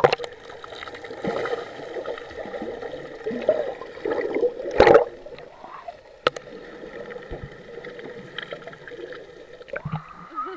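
Muffled underwater gurgling and bubbling of a swimmer moving through pool water, heard through a submerged action camera, with a steady faint hum and a few sharp clicks.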